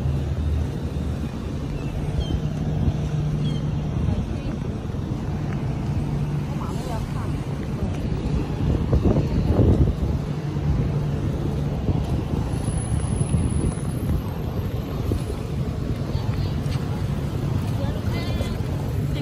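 Road traffic at a city junction: a steady low engine hum under the noise of passing cars, with one vehicle passing louder about nine seconds in.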